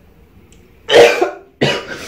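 A man coughing twice, about a second in and again half a second later.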